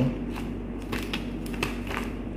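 Clear plastic packaging sheet crinkling and crackling in short irregular ticks as it is handled, over a steady low hum.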